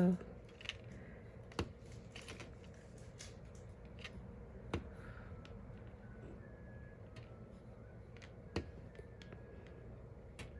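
Faint, scattered light clicks and taps, one every second or few seconds, from hands handling small craft materials while dabbing paint dots.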